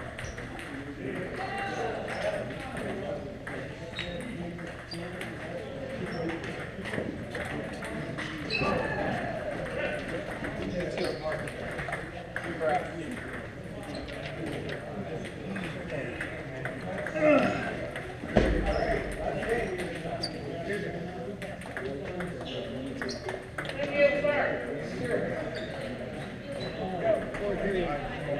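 Table tennis balls ticking off paddles and tables in quick irregular clicks across a large hall, over the indistinct chatter of players. A dull thump sounds about two-thirds of the way through.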